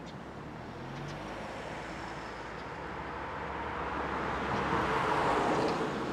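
Road traffic: a vehicle passing close by, its noise swelling to a peak about five seconds in and then falling away.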